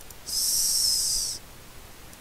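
A high-pitched hiss with a faint whistling tone in it, lasting about a second and stopping abruptly.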